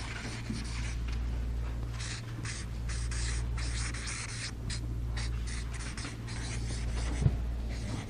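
A marker pen writing on a paper flip chart: short, irregular strokes of scratching and rubbing as the letters are drawn, over a steady low hum. A short knock comes near the end.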